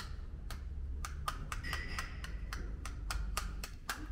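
A string of sharp little clicks, about a dozen at an uneven pace of roughly three a second, from a small blue plastic object worked in a toddler's hands.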